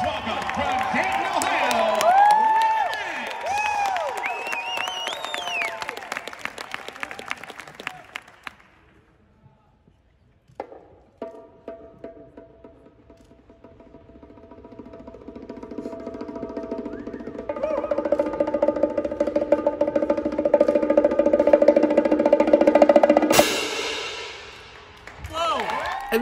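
Crash cymbals and hand-played bongos: after a brief silence, quick bongo taps and ringing cymbals build steadily louder, peak with a sharp hit near the end, and die away.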